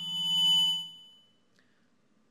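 Public-address microphone feedback: a high ringing tone that swells and dies away within about a second and a half, over a low held hum.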